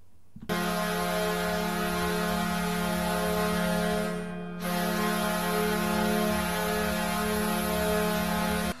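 Ice-hockey arena goal horn played as a sound effect: a loud, steady horn blast starting about half a second in, a short break about four seconds in, then a second long blast.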